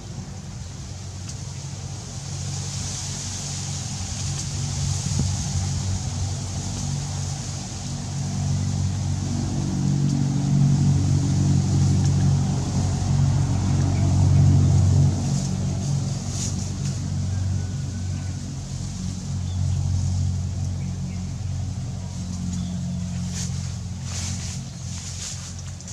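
Low motor rumble with a steady hum, growing louder to its peak about halfway through, then easing off.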